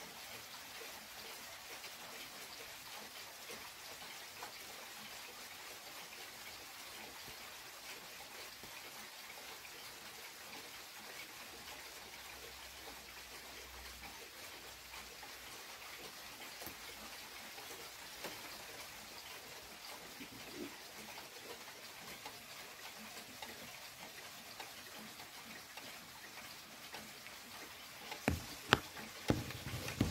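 An 1880s Junghans regulator pendulum clock ticking faintly under a steady hiss, with several louder clicks near the end.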